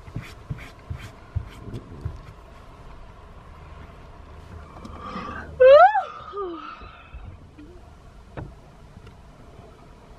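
Quiet interior of a parked car with a few soft clicks early on, then about halfway through a short, sharply rising vocal squeal from a person, trailing off in a smaller falling sound.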